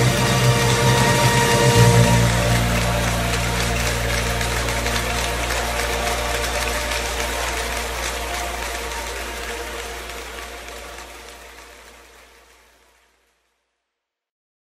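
The final sustained chord of a live worship band, with the low bass note changing about two seconds in, fading steadily out to silence near the end.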